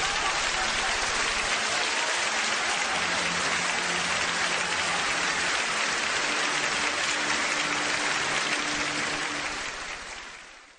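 Theatre audience applauding steadily at the end of a ballet number, tapering off near the end.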